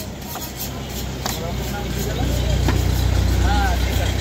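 A motor vehicle's engine running close by, its low rumble swelling louder in the second half, with a few sharp chops of a butcher's knife striking a wooden log chopping block.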